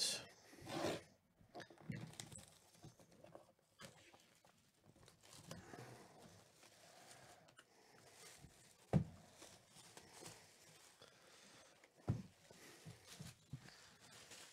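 Faint rustling of a shrink-wrapped cardboard box being handled and turned over, with two short knocks about nine and twelve seconds in as the box touches the table.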